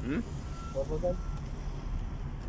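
Steady low rumble of a car's cabin while driving, with a short murmured voice at the start and another around the middle. Two brief faint beeps sound about half a second apart.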